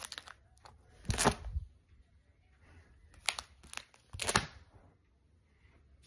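Plastic card-binder sleeve pages being handled and turned, giving several short crinkling rustles, the loudest about a second in and a cluster between three and four and a half seconds in.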